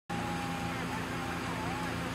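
Steady outdoor ambience at a burning house: a constant low hum of engines running under a noisy hiss, with faint distant voices.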